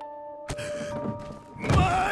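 A single sharp thud about half a second in, over background music with steady held tones. Near the end a man shouts loudly.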